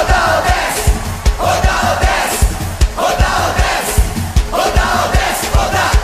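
Live axé music with a steady, driving drum beat, while a crowd of voices shouts along in short phrases that repeat about every second and a half.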